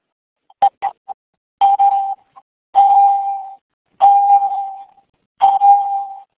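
Web-conferencing software's hand-raise alert chiming again and again, one ringing ding fading out about every second, each one signalling another attendee raising a hand. It opens with a few quick short blips about half a second in.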